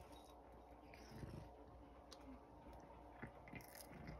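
Faint sounds of a cat fishing dried sardines out of a small glass jar with its paw, then a few small crunches in the last second as it chews one.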